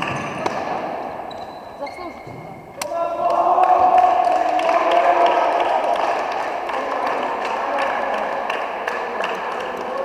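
Players' voices shouting and calling across a large echoing sports hall during a softball game, with faint knocks throughout. A single sharp crack comes about three seconds in, and the shouting swells right after it.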